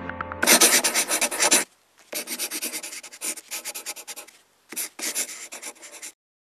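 Scratchy scribbling sound effect, like a pen writing fast on paper, in three bursts of rapid strokes: a loud one about half a second in, then two quieter ones after short gaps.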